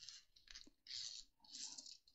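Faint, brief rustles of a small resin drill tray being handled and slid over the plastic cover sheet of a diamond-painting canvas, twice, about a second in and again shortly after.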